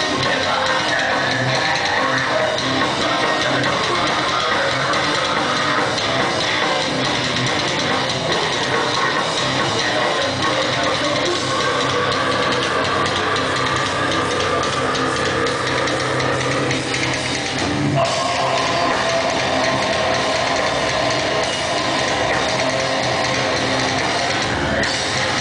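Metalcore band playing live: distorted electric guitars and a drum kit, loud and dense throughout, with a short break and a change of section about eighteen seconds in.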